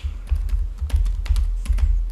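Typing on a computer keyboard: a quick run of about a dozen keystrokes, each click with a low thump underneath.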